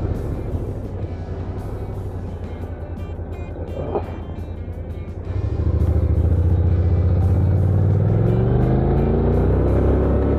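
Honda NC750X parallel-twin motorcycle engine running low and steady through a junction, then opening up about five seconds in and pulling away, its pitch rising as it accelerates.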